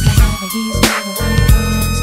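Hip hop beat playing between rapped lines: drum hits over a sustained bass line and steady keyboard tones.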